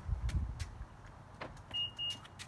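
Infiniti QX60 locking: a short, thin, high single beep near the end, with a faint click just before it. Low rumble of phone handling at the start.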